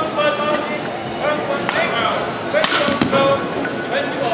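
Badminton rally: sharp racket strikes on the shuttlecock, the loudest about two and a half seconds in, with short squeaks of players' shoes on the court.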